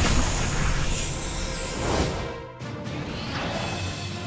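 Cartoon bomb explosion sound effect: a sudden loud blast right at the start, rumbling on for about two and a half seconds, over background music.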